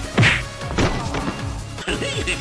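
Fight-scene punch and whack sound effects: one loud hit just after the start, its pitch falling quickly, then a lighter falling hit under a second in, over background music.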